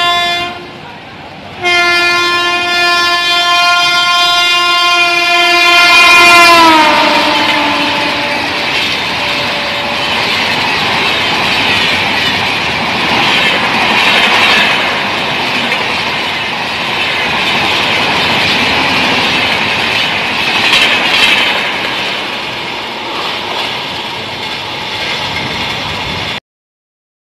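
Electric locomotive horn: a short blast, then a long one whose pitch drops about six seconds in as the train passes at high speed. After that the passenger coaches rush past with a loud, steady roar and wheel clatter over the rails.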